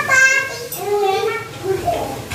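Toddlers babbling and calling out in high voices as they play: several short vocal sounds, one after another.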